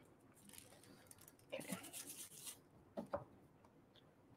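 Near silence: room tone with faint rubbing and handling noises from work at the craft table, one stretch about one and a half seconds in and a brief one about three seconds in.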